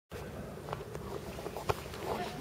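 Outdoor background rumble and hiss with a few short, sharp clicks, the loudest about one and a half seconds in.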